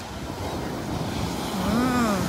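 Ocean surf breaking and washing up the beach, swelling slightly louder. A voice calls out once, briefly, near the end.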